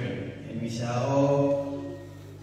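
A man's voice chanting in long held notes, one pitch sustained for about a second before it stops near the end.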